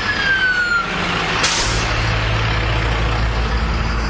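An emergency vehicle's siren winds down in a falling tone over the first second. About a second and a half in there is a short air-brake hiss, and then the heavy vehicle's diesel engine runs with a steady low rumble.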